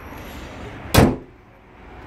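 The bonnet of a 2017 Peugeot 108 slammed shut: one sharp slam about a second in that dies away quickly.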